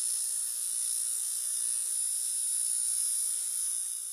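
Electronic static-like sound effect for an animated logo: a steady high hiss with a faint hum beneath. It starts abruptly and drops a little near the end.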